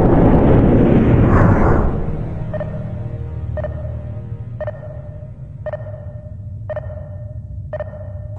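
A loud, noisy swell fades over the first two seconds. Then a heart monitor beeps steadily about once a second, a short ping each time, over a low steady hum.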